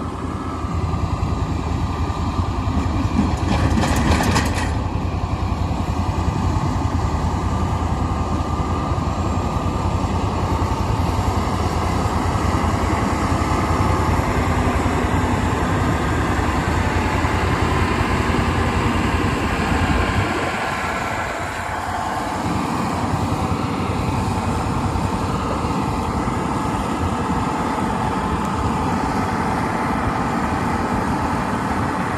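John Deere loader tractor's diesel engine running steadily as the tractor drives past, with a brief hiss about four seconds in. The deep rumble drops away about twenty seconds in.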